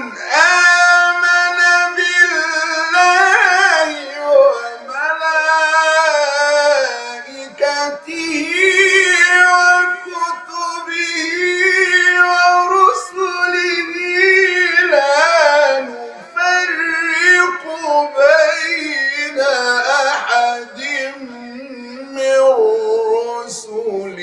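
Male voice reciting the Quran in the melodic mujawwad style: long held notes with ornamented runs, in several phrases broken by short breaths. The phrases sink lower in pitch toward the end.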